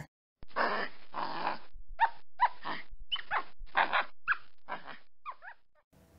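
An animal-call sound effect: two breathy, rasping bursts, then a run of short, high calls that rise and fall in pitch, getting fainter and stopping shortly before the end.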